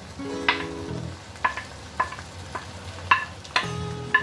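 Wooden spoon knocking and scraping on a ceramic plate as diced potatoes are pushed off it into a pan, with about six sharp knocks roughly half a second apart.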